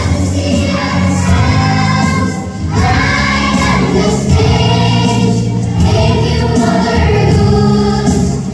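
A group of preschool children singing an action song together over recorded backing music.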